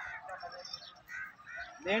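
A few faint, brief calls from distant birds during a lull in the talk. A man speaks a word just before the end.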